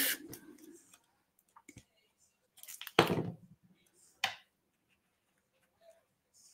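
Small handling noises of paper crafting with tweezers and glue: a few faint ticks, a short scuffing knock about three seconds in, and a single sharp click a little over a second later, as a paper leaf is glued and pressed onto a card.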